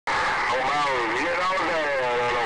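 CB radio receiver speaker playing a pile-up of skip (long-distance DX) signals: several distorted voices talking over each other through static, with a faint steady whistle. The audio cuts out for an instant at the start.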